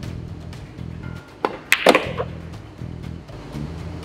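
A pool shot on a billiard table: a sharp click of the cue tip on the cue ball, then about a quarter second later a louder cluster of ball-on-ball clacks. Background music with a steady low melody plays throughout.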